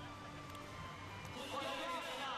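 Faint background music, with a faint distant voice coming in about a second and a half in.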